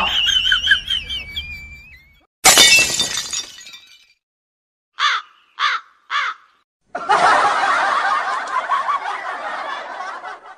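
A run of comedy sound effects laid over the video: a warbling high whistle-like tone, then a sudden crash like breaking glass about two and a half seconds in. Three short chirps follow around five seconds in, then a dense noisy stretch from about seven seconds that fades near the end.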